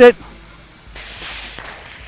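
Water hissing out of a garden hose's multi-pattern spray nozzle as it is twisted open. The spray starts suddenly about a second in, loudest at first, then settles to a steadier, fainter hiss.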